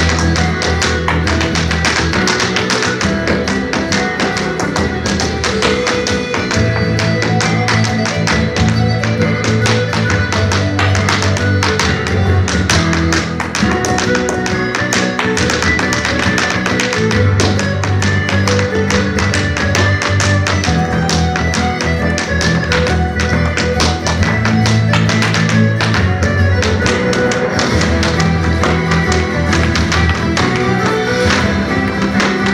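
Irish dance hard shoes striking the floor in fast, rhythmic taps and clicks over loud recorded music.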